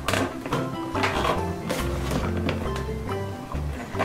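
Background music: a light tune over a bass line that steps from note to note.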